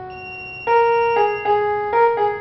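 Small electronic keyboard playing a single-note melody in a piano-like voice. One held note fades away, then about two-thirds of a second in the tune resumes with separate notes roughly every half second.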